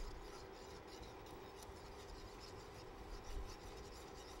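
Wire whisk stirring thick cheese sauce in a pan, its wires rubbing and scraping faintly and steadily against the pan.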